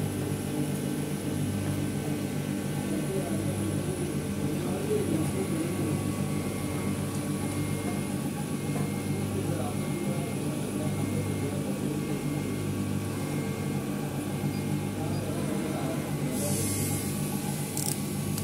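A CNC glass engraving machine runs with a steady hum of several level tones while its spindle engraves a glass panel. A short burst of hiss comes near the end.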